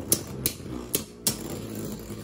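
Two Beyblade Burst tops, Astral Spriggan and Dynamite Belial, spinning in a plastic stadium with a steady whirr, broken by several irregular sharp plastic clacks as they hit.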